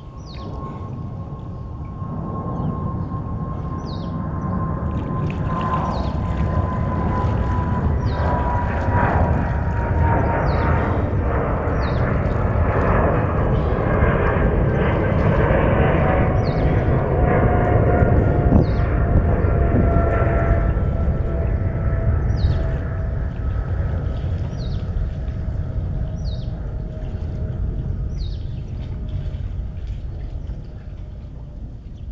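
An aircraft passing overhead: a rumbling roar that swells for about eighteen seconds and then fades, with a steady whine that falls slowly in pitch throughout.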